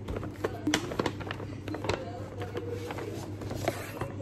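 Paper shopping bag rustling and crinkling as a boxed product is pulled out of it, a run of short, sharp crackles and taps.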